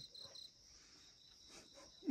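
Faint crickets chirping at night: a steady high trill, with a quick run of pulsed chirps in the first half second.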